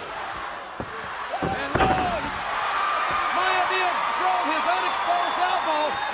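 Thuds of pro-wrestling blows and bodies hitting the ring canvas, several in the first two seconds, the loudest about two seconds in. The arena crowd noise then swells and stays louder.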